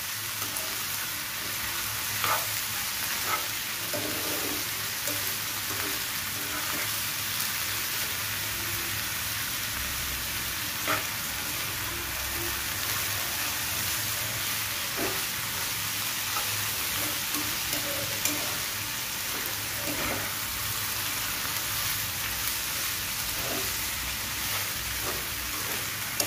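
Bottle gourd greens and stems (lau shak) sizzling in a nonstick frying pan as they are stirred and tossed with a spatula. There is a steady sizzle, with a few sharp clicks of the spatula against the pan.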